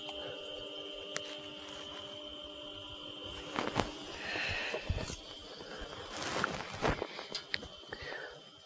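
Topsflo TD5 DC brewing pump running very quietly with a faint steady high whine, circulating water that swirls in a stainless pot. A few light knocks from handling the hose and fittings.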